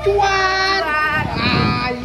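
A child's voice singing long held notes, the last one higher.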